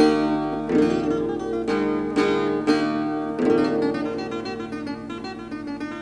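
Acoustic guitar playing a Sardinian cantu a chiterra accompaniment in D on its own, chords struck about twice a second and each left to ring. The strokes grow gradually softer toward the end.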